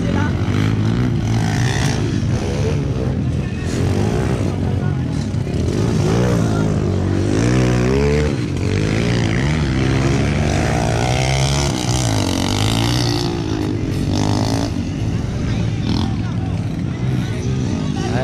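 Dirt bike engines revving on a mud track, pitch rising and falling repeatedly as the riders open and close the throttle. Voices can be heard underneath.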